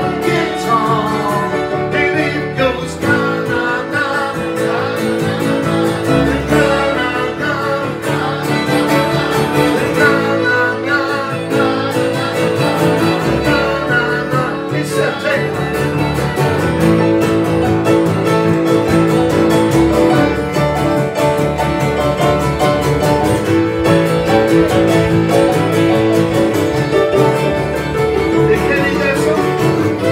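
Live acoustic folk-rock band playing: two steel-string acoustic guitars strummed, with fiddle and keyboard, and a voice singing the melody.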